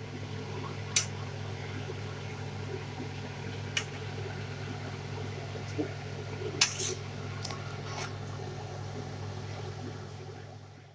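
Cooking spoon clinking and scraping against a metal kadai as diced pumpkin is stirred, with sharp knocks about a second in, near four seconds, and several more between about six and eight seconds, over a steady low hum.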